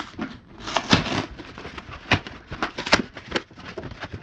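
Packing tape being torn off a cardboard box and its flaps pulled open: a tearing rustle about a second in, then several sharp crackles and snaps of the cardboard.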